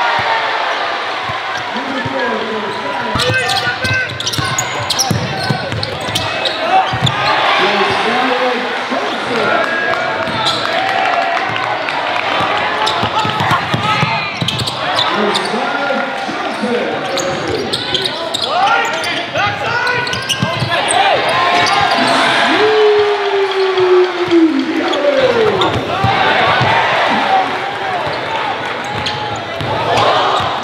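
Basketball game sound in a gymnasium: a basketball bouncing on the hardwood floor amid indistinct crowd and player voices.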